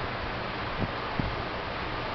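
Steady hiss of background noise, with two soft low knocks about a second in.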